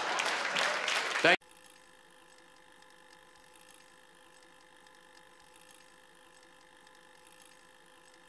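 Comedy-club audience laughing and applauding, cut off abruptly about a second and a half in, leaving only a faint steady hum.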